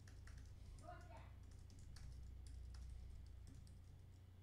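Computer keyboard being typed on: a quick, irregular run of faint key clicks.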